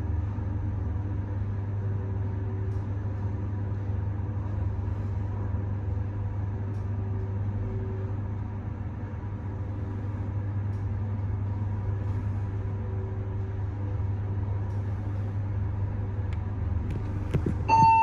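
Fujitec ZEXIA lift car travelling down with a steady low hum and faint steady tones from its drive. Near the end come a few clicks and a short two-note chime as the car arrives.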